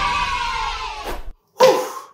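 A man's long, excited yell, falling in pitch and cutting off just after a second, followed by a short, loud shout.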